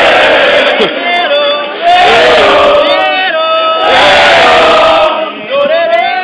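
Call-and-response singing: a man sings long, sliding calls and a crowd of voices sings and shouts them back. The two sides alternate every second or two.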